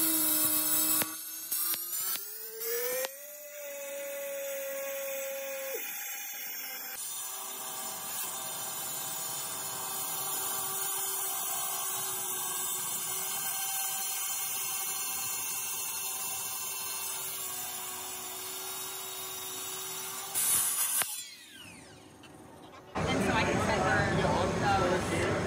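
Hilti cut-off saw wet-cutting concrete pavers: a steady motor whine that rises in pitch about two to three seconds in, then drops and holds lower under load with cutting noise while the blade works through the paver. Near the end the saw winds down.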